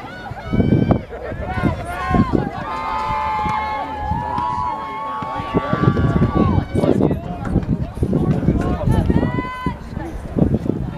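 Players on a soccer field shouting short calls to one another, over outdoor ground noise with low thumps. A long steady note of about four seconds sounds in the middle.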